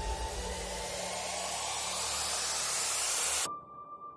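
A hiss of noise that swells and grows brighter, then cuts off suddenly about three and a half seconds in, leaving a faint steady high tone.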